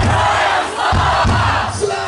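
Live metal concert crowd cheering and shouting, with a few low thumps underneath.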